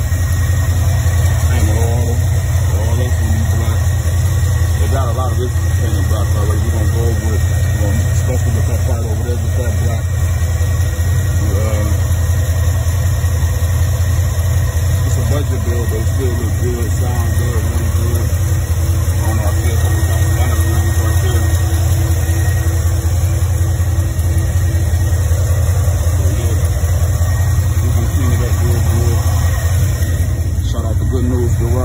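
Classic Camaro's engine idling steadily, a continuous low exhaust rumble after a cold start, with voices talking over it.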